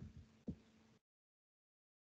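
Near silence: one faint low thump about half a second in, then the sound cuts out completely.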